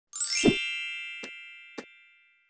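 Logo intro sound effect: a quick rising shimmer and a low thump open into a bright, many-toned ringing chime that slowly fades. Two short clicks follow, a little past one second in and again near the end.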